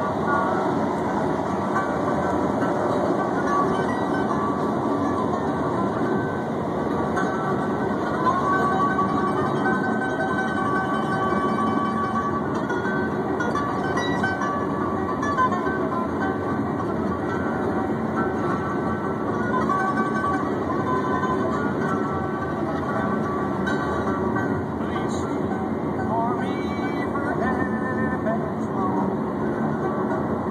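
Steady road and tyre noise from a car moving at highway speed, heard from the back seat. The phone is pressed against the side window.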